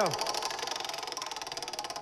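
Large prize wheel spinning, its pegs clicking rapidly and evenly past the pointer.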